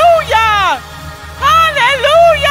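A woman's voice, amplified through a handheld microphone, sung out in long, bending phrases over a steady low musical accompaniment, with a short break about a second in.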